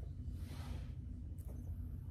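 A heavy metal fidget spinner flicked into a spin with a single light click about a second and a half in, its bearing running super quiet. A soft breathy rush comes just before the click.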